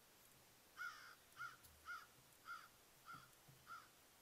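A bird calling unseen: a run of six short calls about 0.6 s apart, starting about a second in, each rising and falling in pitch.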